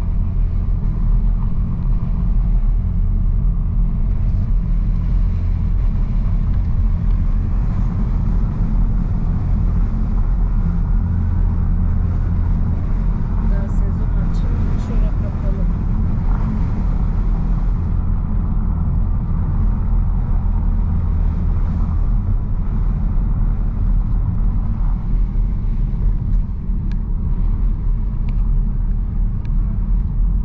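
Steady low rumble of a car's road and engine noise, heard from inside the cabin while driving slowly.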